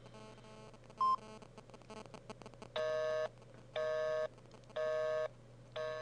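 Telephone busy signal: a short beep about a second in, then four half-second tone pulses about once a second. The number dialled is not getting through.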